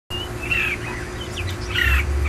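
Red-whiskered bulbuls calling: short chirping notes, a few around half a second in and another group near the end, over a steady low rumble.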